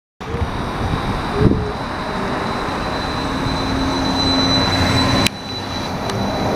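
Battery-electric bus running at a stop and moving off, a thin steady high whine over road and traffic noise. A sharp click near the end, after which the sound drops a little.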